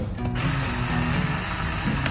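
Cordless electric screwdriver running, backing screws out of a laptop's bottom cover.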